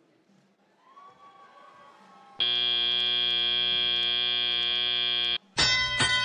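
Competition field buzzer marking the end of the autonomous period: one loud, steady buzz of about three seconds, starting a little over two seconds in and stopping abruptly. Just before the end, a second, brighter field tone begins, signalling the start of the tele-operated period.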